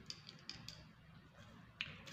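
Dried red chili pieces crumbled between fingers and dropped onto paper: a few faint, scattered light clicks and crackles, with a sharper tick near the end.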